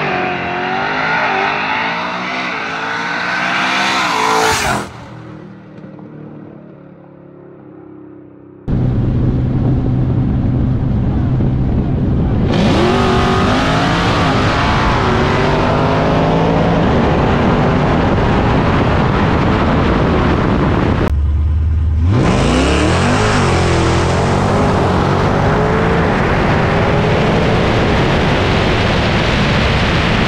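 Street-racing cars accelerating hard, engine pitch climbing in rising sweeps, heard in several clips that cut abruptly into one another, about 5 s and 9 s in and again near 21 s. The sound is quieter between about 5 and 9 s and loud and sustained after that.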